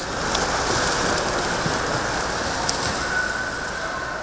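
Swimmers splashing through the water in an indoor pool, a steady wash of splashing.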